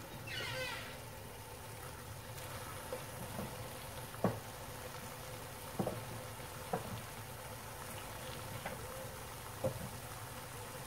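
Cauliflower florets and snow peas steaming in a stainless steel pan: a faint steady sizzle, with a few sharp pops scattered through.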